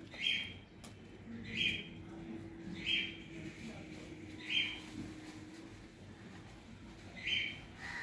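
A bird calling over and over: five short, alike calls, about a second or more apart, with a longer pause before the last one.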